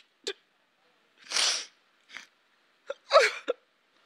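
A person crying: short sobbing catches of breath, a long breathy gasp, then a louder sob that falls in pitch near the end.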